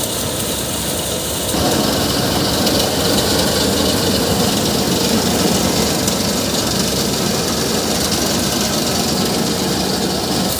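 Tractor-driven paddy thresher running: a steady, loud mechanical din of the spinning threshing drum and fan with the tractor engine under it, as rice straw is fed in and grain pours out. It grows louder about a second and a half in and then holds steady.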